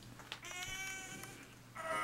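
A man straining on the toilet lets out a high, strained whine through clenched teeth, held for about a second. A louder strained groan starts near the end.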